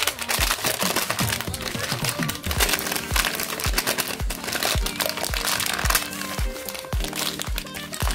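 Crinkling and rustling of white paper wrapping as hands unwrap a small toy figure, heard over background music with a steady beat.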